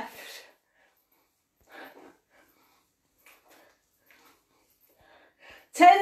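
A woman's faint, short puffs of breath from the exertion of punching, a few separate exhalations about a second apart, between long quiet gaps.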